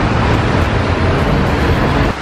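Loud, steady city traffic and road noise with a heavy low rumble.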